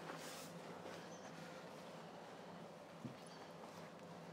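Faint rustling of a towel rubbing down a wet, snowy dog, with a couple of light knocks.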